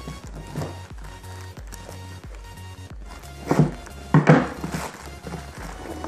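Background music with a steady bass line. Plastic mailing bag being cut with scissors and handled, with two loud rustling bursts about three and a half and four seconds in as the phone box is pulled out.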